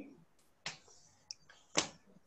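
Two sharp clicks about a second apart, with a couple of fainter ticks between them, over a quiet call line.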